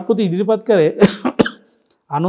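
A man speaking, then two short, sharp coughs about a second in, roughly half a second apart.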